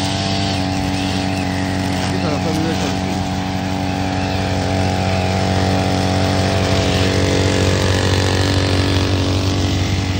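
Petrol brushcutter's small engine running steadily as it cuts grass, a continuous engine drone that gets slightly louder in the second half.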